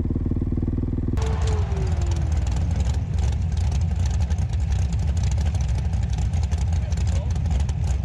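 Dirt bike engine running steadily. About a second in, the sound turns rougher and one pitch falls slowly over the next two seconds.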